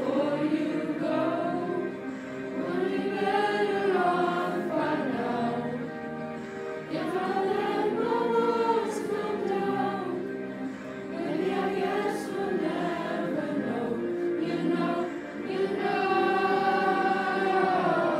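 A school choir singing in unison along with a karaoke backing track, in long phrases of a few seconds each that rise and fall in pitch.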